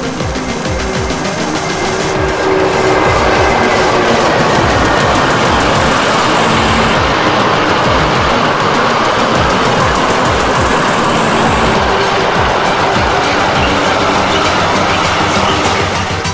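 Long electric freight train of hopper wagons rolling past, a steady rush of wheel-on-rail noise that builds about two seconds in and fades near the end. Background music plays underneath.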